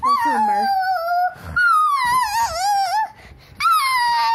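A young child's long, high-pitched vocal cries, three in a row with short breaks, each sliding down in pitch and the middle one wavering.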